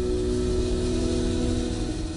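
Documentary background score: a steady held chord of several tones over a continuous low rumble.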